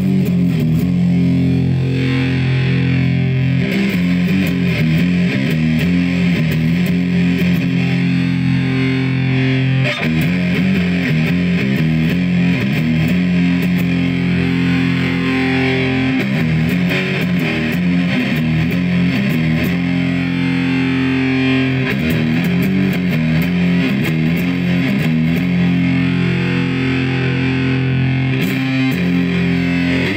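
Electric guitar (a Chapman ML3 with a Seymour Duncan Pegasus pickup) played through a DIY Coda Effects Dolmen Fuzz, a Big Muff-style fuzz built with Green Russian component values, into the clean channel of an Orange Crush Pro 120 amp. Thick fuzz-distorted notes and chords are held long and run on without a break.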